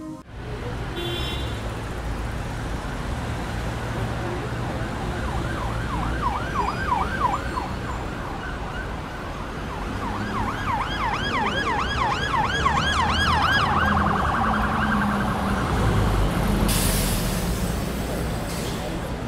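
Emergency-vehicle siren in a fast yelp, its pitch sweeping up and down several times a second, heard in two spells, the second longer, over the rumble of road traffic. A short burst of hiss comes near the end.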